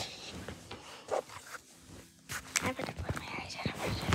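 Phone being handled and repositioned: scattered knocks, taps and rustles against the microphone, with a soft, indistinct voice between them.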